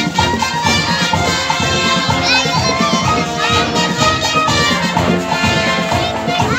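A marching band playing live: a brass section with sousaphones over drums keeping a steady beat.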